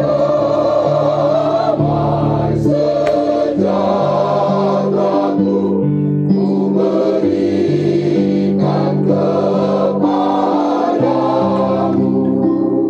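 Mixed choir of men and women singing a gospel song together in parts, with sustained chords that change every second or so.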